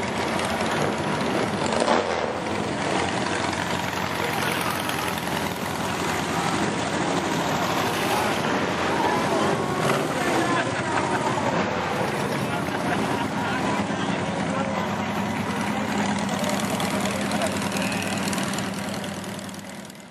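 Engines of dune buggies and go-karts running as they drive slowly past, mixed with people talking nearby. The sound fades out at the end.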